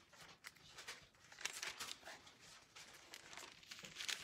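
Bible pages being leafed through by hand: a series of faint paper rustles.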